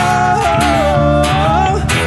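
Live acoustic-duo music: a strummed acoustic guitar and a five-string electric bass, with a male voice holding one long sung note that fades just before the end.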